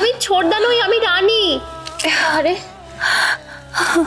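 A woman moaning in pain with a wavering, drawn-out voice for about a second and a half, then three short gasping breaths. A soft, sustained music bed runs underneath.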